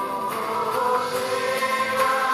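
Live Telugu Christian worship song: voices singing together in chorus over a band, holding long notes.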